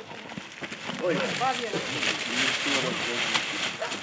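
Several people talking and exclaiming, with a steady hiss behind the voices.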